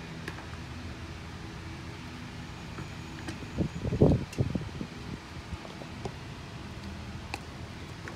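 A steady low mechanical hum from running machinery, with a brief louder burst about four seconds in and a few faint clicks.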